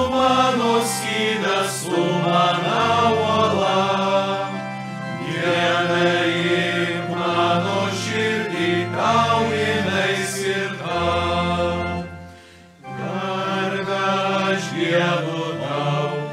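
Choir singing the refrain of a Lithuanian hymn over sustained low accompanying notes. The sound breaks off briefly about twelve seconds in, then the singing starts again with the next verse.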